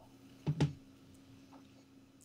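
Near silence: faint room tone with a low steady hum, broken once about half a second in by a brief short sound.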